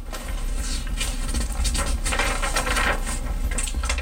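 Paper pages of a handmade book rustling and crinkling as they are handled and turned, a run of crisp rustles that is busiest about two to three seconds in.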